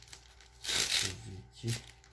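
Packaging crinkling as it is handled, in one short rustle of about half a second.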